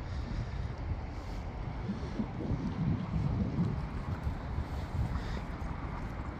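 Wind rumbling and buffeting on the microphone, a fluctuating low noise.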